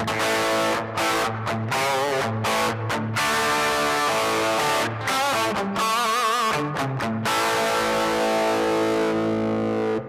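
Kramer Pacer electric guitar with upgraded electronics, played with distortion on its bridge humbucker with volume and tone up full. It plays a chord riff with many short stops, then wavering vibrato on held notes about six seconds in, and ends on a long ringing chord.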